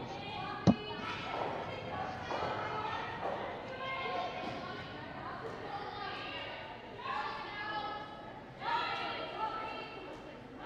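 Curlers' voices calling and talking in the echoing rink, with one sharp knock less than a second in, the loudest sound.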